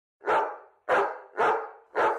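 A dog barking: three sharp barks about half a second apart, each trailing off, with a fourth starting at the very end.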